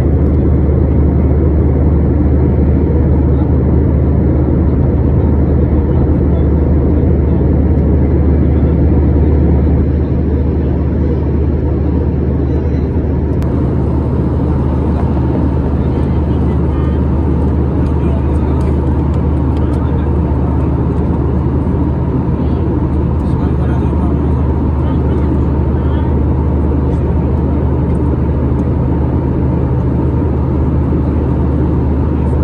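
Steady jet airliner cabin drone heard at a window seat in flight: engine and airflow noise with a strong low hum, dropping slightly in level about ten seconds in.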